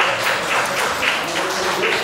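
Audience applauding steadily as an award recipient comes forward.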